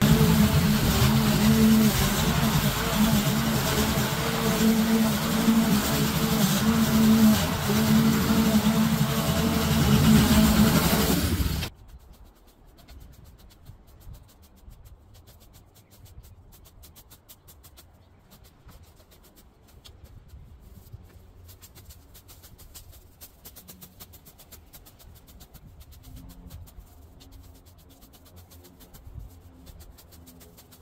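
Petrol walk-behind rotary lawn mower running as it cuts long, overgrown grass, its engine note wavering under the load. It stops abruptly about twelve seconds in, leaving only faint sound.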